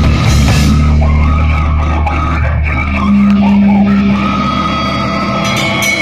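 Death metal band playing live: heavily distorted low guitar and bass riffing over a drum kit, with a held low note about halfway through.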